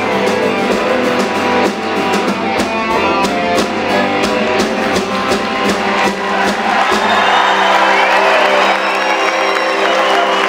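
Live folk-rock band playing an instrumental passage: electric guitar, fiddle and a djembe struck with beaters keeping a steady beat. About seven seconds in the drumming stops on a held final chord and the audience starts applauding and whistling.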